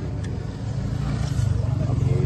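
Low, steady rumble of a nearby motor vehicle's engine, growing louder through the second half.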